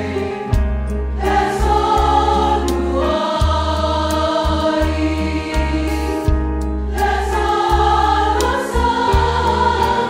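Choir singing a gospel song in sustained harmony over held bass notes.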